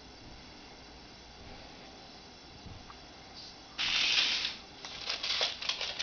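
A short hiss about four seconds in, then rapid, irregular scratching and clicking of a bearded dragon's claws on a wooden floor as it scurries.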